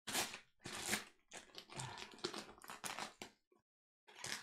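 Crunching and crackling of parcel packaging being forced open by hand, in short irregular bursts; the parcel is hard to open.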